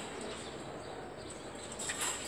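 Steady background hiss with a thin, high, steady tone running through it. It holds no distinct calls or knocks.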